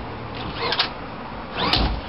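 Two short clicks about a second apart, from a fiberglass storage drawer and its stainless flush latch being handled, over a steady low hum.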